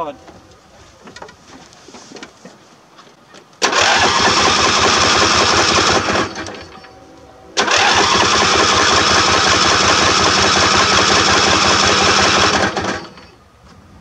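Lawn tractor's 24 hp Briggs & Stratton V-twin turned over on its electric starter in two tries, about two seconds and then about five seconds long, without catching.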